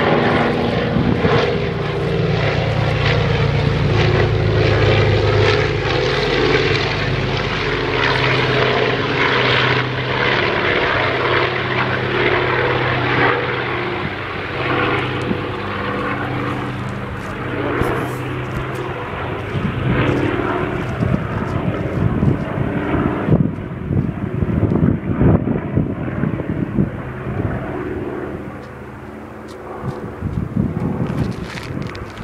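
Propeller engines of a low-flying yellow twin-engine water bomber, a steady drone that fades over the last few seconds as the plane moves away.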